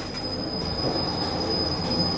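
Passenger elevator travelling, heard from inside the cabin: a steady, smooth running hum with a thin high whine and no rattling.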